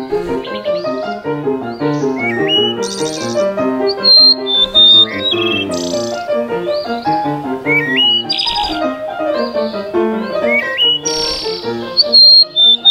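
Quail calls, short high whistled notes, some sliding upward, repeating every few seconds. The loudest pair comes about four to five seconds in. Under them plays a classical piece on a keyboard instrument.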